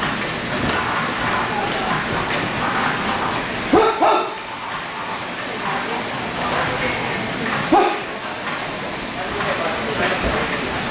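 Steady background chatter of many voices, with three short, sharp pitched chirps: two close together about four seconds in and one near eight seconds.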